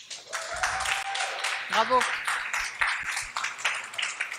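An audience applauding steadily, with a short shout or whoop from the crowd about two seconds in.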